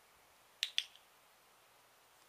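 A dog-training clicker pressed and released: two sharp clicks about a fifth of a second apart, marking the puppy's behaviour for a reward.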